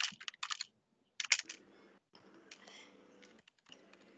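Computer keyboard typing: a few quick clusters of key clicks, with faint background noise between them.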